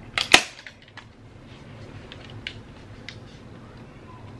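Handheld staple gun firing once, a sharp double clack a quarter-second in, as it drives a staple through shower-curtain fabric into a wooden canvas frame. A few faint ticks follow.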